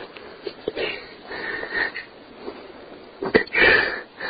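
A woman weeping between sentences: sniffs and breathy sobs, with a louder catch of breath about three and a half seconds in.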